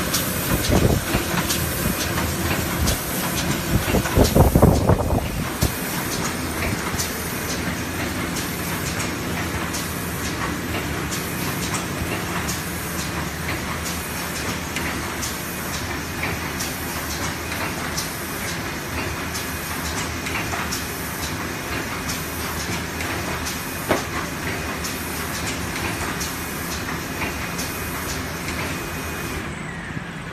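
Automatic board book binding machine running: steady mechanical noise under a regular clicking beat, with a louder clattering stretch about four to five seconds in.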